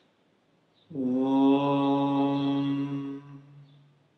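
A man chanting one long note at a steady pitch, starting about a second in. The higher overtones fade away near the end, leaving a low hum.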